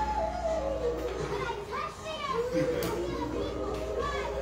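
Several children's voices chattering and calling over one another, with music playing underneath.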